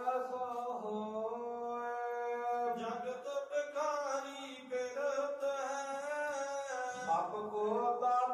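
Male voice chanting Sikh scripture (Gurbani) in a slow sung melody, drawing out long held notes that bend gently in pitch, with a brief pause about halfway through.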